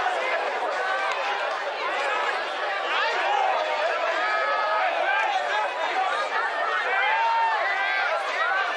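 Many voices shouting and calling over one another: rugby spectators and players reacting as play goes on.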